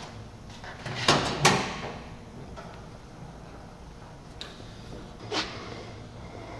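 Car door of a 1968 Dodge Charger being swung open: two sharp knocks a little over a second in, and one more knock near the end.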